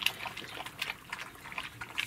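Two German shepherd puppies lapping and slurping a goat-milk mix from a steel bowl: a quick, uneven run of small wet clicks, at their first feeding from a bowl.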